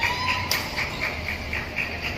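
Badminton rally: high chirping squeaks, typical of court shoes on the court floor, repeating several times a second. A sharp racket strike on the shuttlecock comes about half a second in.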